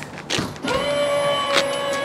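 The fifth wheel's auto-leveling system working: a steady motor whine comes up about half a second in and holds level. A few sharp clicks sound as a storage compartment door is opened.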